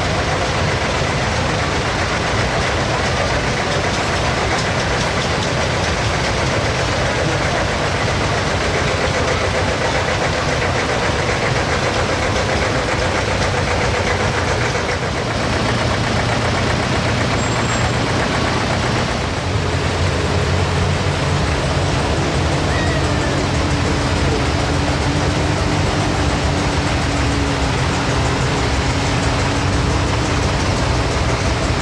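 Engines of several vintage farm tractors running at low speed as they drive past one after another in a slow parade. About two-thirds of the way through, a new, stronger and lower engine note takes over as the next tractors come by.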